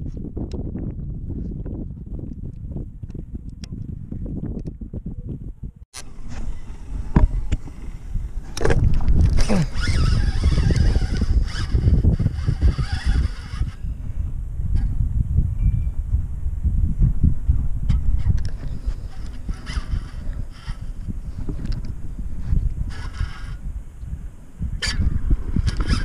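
Wind buffeting the camera's microphone in a low, rumbling roar, louder after an abrupt break about six seconds in, with a few scattered knocks from handling the fishing rod and baitcasting reel.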